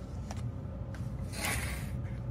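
A foil baking tin being slid into place on a hardboard work surface: a few faint clicks, then a short scraping rustle about a second and a half in, over a steady low hum.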